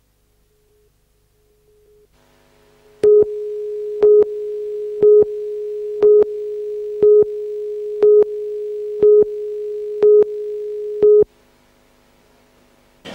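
Broadcast countdown leader tone: a steady mid-pitched tone with a louder beep once a second, nine beeps in all, cutting off just after 11 seconds in.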